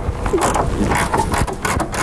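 Socket ratchet clicking in a quick run of clicks as the 18 mm bolt of a rear shock absorber mount, already cracked loose, is wound out.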